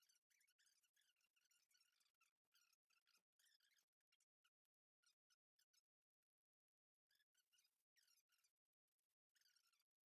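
Near silence: the sound track is all but muted.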